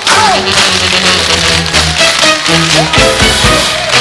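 Up-tempo accompaniment music with a stepping bass line, overlaid with a rapid stream of sharp clicks from tap shoes on a stage floor.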